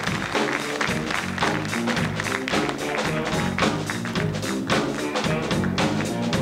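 Music with a fast, steady beat, struck up as the acceptance speech ends.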